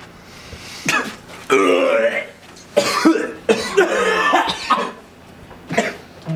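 A person coughing and clearing their throat in about five rough vocal bouts, with short pauses between.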